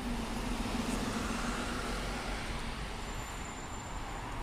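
City buses passing at close range: engine running and tyre noise as one bus moves off and an articulated bus follows it past. The engine tone fades out about three seconds in, and a faint high whine is heard near the end.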